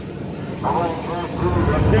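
People talking over the low rumble of a vehicle engine, which grows louder in the second half.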